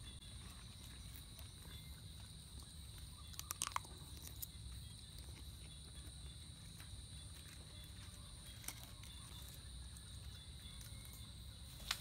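Quiet eating: a man chewing a mouthful of rice, with a few soft clicks of a spoon on a plate, the clearest about three and a half seconds in. A faint steady high-pitched whine runs underneath.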